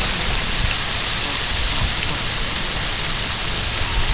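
Steady outdoor background noise: an even hiss with a low rumble beneath it, unbroken throughout.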